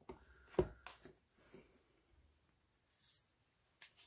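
Cardboard album packaging and photocards being handled on a table: a sharp tap a little over half a second in, then a few faint taps and rustles.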